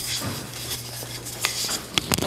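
Soft rustling and handling noise, with a light click about one and a half seconds in and another near the end.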